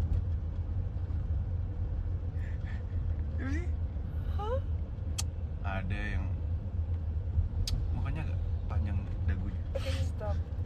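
Steady low rumble of a car, heard from inside its cabin, with short snatches of voices over it and two brief sharp clicks near the middle.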